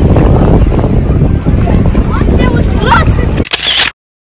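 Wind buffeting the microphone with a loud, steady low rumble. Children's voices come through faintly, and a short high-pitched shout follows near the end before the sound cuts off.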